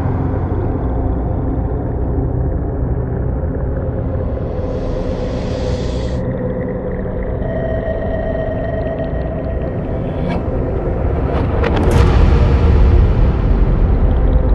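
Dark, droning soundtrack music over a deep rumble. A hissing whoosh swells and cuts off suddenly about six seconds in, and a few sharp hits come near the end as it grows louder.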